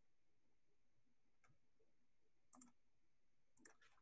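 Near silence with three faint computer mouse clicks, about a second apart.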